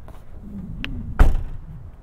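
The liftgate of a 2022 Mazda 3 hatchback is pulled down and slammed shut: a light click, then one heavy thud a little over a second in.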